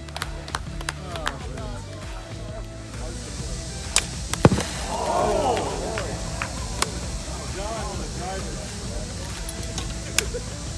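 Sharp cracks of golf clubs striking balls, the loudest two about four seconds in, over background music, with voices calling out just after.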